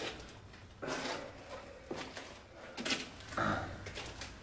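Several short scraping scuffs, about one a second, with a man's short grunt near the end.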